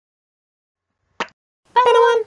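Logo intro sting: a single short pop just over a second in, then a brief high, steady, voice-like note lasting about half a second near the end.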